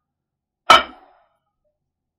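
A plate set down on a wooden countertop: one sharp clink about two-thirds of a second in, ringing briefly.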